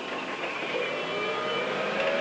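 Translift Bendi articulated forklift at work: a steady motor whine that wavers a little in pitch about half a second in, then holds.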